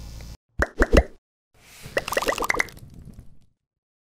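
Station logo sting sound effect: steady studio room noise cuts off suddenly, then three short, loud pitched plops around the one-second mark, then a quicker run of pitched plops over a soft hiss.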